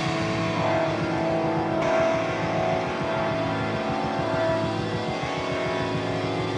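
A car engine sound running steadily with a dense rumble, taking over from the song's guitars. A hiss joins in about two seconds in.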